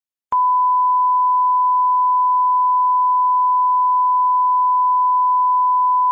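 Loud, steady test tone: the single unchanging pitch of a line-up tone played with colour bars at the head of a video tape. It switches on with a click a moment in and holds without any change.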